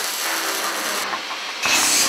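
Metalworking shop noise: an electric welding arc crackling and hissing, then, about a second and a half in, a louder burst of a grinder on steel.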